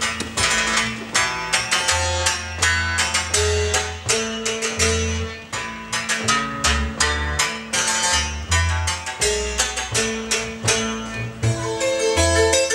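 Instrumental passage between sung verses: a double bass plucked pizzicato, holding low notes, under a brighter plucked string instrument playing a quick run of notes.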